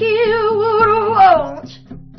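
A singer holds a long note with vibrato over acoustic guitar, then slides the pitch down and lets it go about a second and a half in, leaving the guitar playing on.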